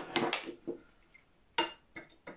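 Metal clinks of a steel G-clamp being picked up and fitted onto a steel bar in a bending jig: a few light clinks, then one sharper clink near the end.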